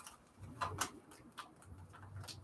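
Faint crinkling and rustling of a small clear cellophane bag, with a few crisp ticks, as a stack of paper journal pieces is pushed into it.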